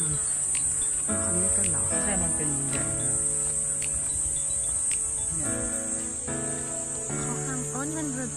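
A steady, high-pitched drone of cicadas in the trees, under background music with a melody of gliding notes.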